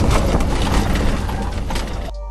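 Tuk-tuk (auto-rickshaw) heard from inside its open cabin while driving: the small engine running, with road noise and frequent rattles and clicks from the body.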